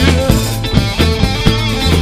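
Live rock band playing between sung lines: electric guitars and bass guitar over a drum kit keeping a steady beat of about four hits a second.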